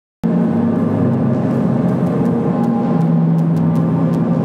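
A steady, low droning ambient soundtrack that starts abruptly about a quarter of a second in and holds at an even level, with a few faint clicks.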